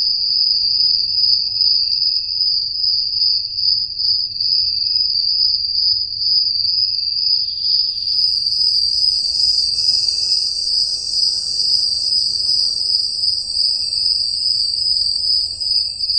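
Crickets trilling steadily in one high continuous trill, joined about halfway through by a second, still higher trill.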